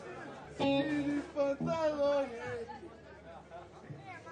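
People's voices talking over background chatter, loudest in the first half and quieter in the second.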